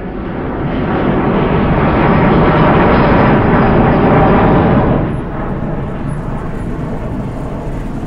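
Jet airliner taking off and climbing, its engine noise building over the first couple of seconds, loudest around three to four seconds in, then dropping about five seconds in to a lower steady rumble.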